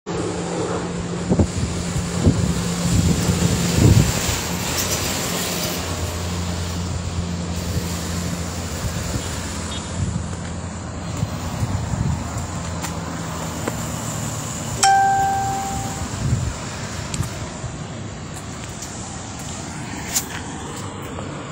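Road traffic with a steady engine hum, and a single short ringing tone about fifteen seconds in that fades away over about a second.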